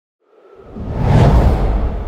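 A whoosh transition sound effect with a deep low rumble underneath. It rises out of silence about a third of a second in, peaks just past the middle and then starts to fade.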